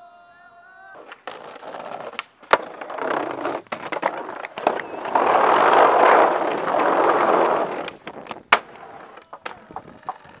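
Skateboard wheels rolling over pavement, building to their loudest for a few seconds past the middle as the board passes close. Two sharp clacks ring out, about two and a half seconds in and again near the end.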